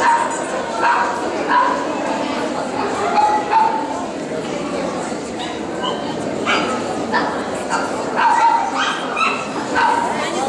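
Dogs yapping in short, high-pitched yips again and again, over a steady murmur of voices in a large hall.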